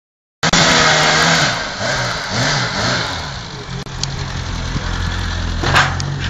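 A car engine revving, its pitch rising and falling several times, cutting in after a brief silence at the start.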